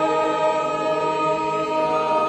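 Men's barbershop chorus singing a cappella, holding one sustained chord in close harmony.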